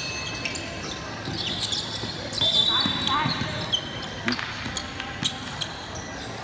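A basketball bouncing on a hardwood court as sharp, scattered knocks, with short high sneaker squeaks about halfway through and spectators talking.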